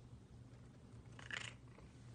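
Tabby cat purring softly and steadily, with one short, soft, breathy meow about a second and a half in.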